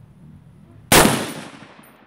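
A single shot from a Heckler & Koch .308 Winchester rifle fitted with a muzzle brake, about a second in. It is a very loud, sharp crack whose echo dies away over the next half second or so.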